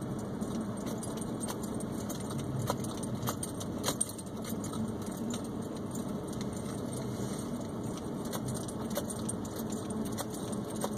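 Inside a car driving slowly over a snowy track: a steady low rumble of engine and tyres, with frequent small light clicks and rattles, a few sharper ones about three to four seconds in.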